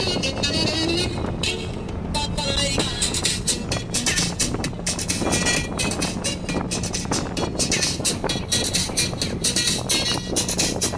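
Inside a crowded moving bus: the engine's steady low hum with continual rattling, passengers' voices and music.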